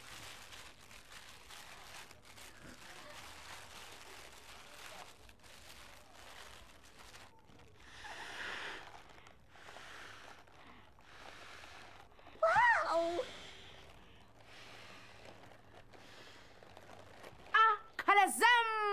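Long breaths blown into a plastic bag through its mouth, one after another, inflating it so that it lifts a book lying on top. A short vocal exclamation about twelve seconds in.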